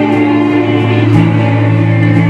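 Slow blues music on slide guitar with backing: sustained held chords over a low bass, with a new bass note coming in about a second in.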